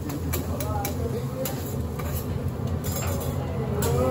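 Metal spatula and fork clicking and scraping on a teppanyaki griddle as fried rice is turned: several sharp clicks at irregular intervals, over a steady low hum and background voices.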